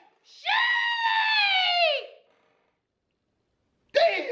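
A man's long, high-pitched excited scream, held for nearly two seconds and falling in pitch as it trails off.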